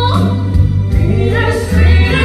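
A woman and a man singing a musical-theatre duet through microphones over steady instrumental accompaniment, a new sung phrase starting near the end.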